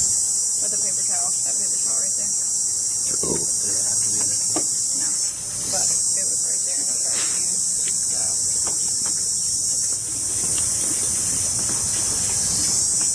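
Steady, high-pitched chorus of insects, with brief dips about five and ten seconds in.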